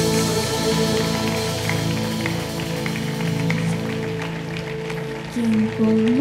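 Live worship band playing a soft instrumental passage of held chords with acoustic guitars and violin; a singing voice comes in near the end.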